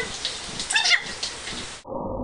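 A brief high-pitched squeal over a steady hiss, then the sound cuts off abruptly near the end.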